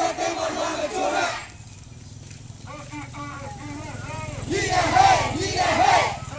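Marching protest crowd shouting slogans together, call and response: a loud group shout in the first second and a half, a quieter voice calling in between, and a second loud group shout near the end.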